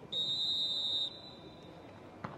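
Referee's whistle: one long, steady, shrill blast lasting about a second, marking the ball dead on a field-goal attempt. A fainter tone at the same pitch trails on until near the end.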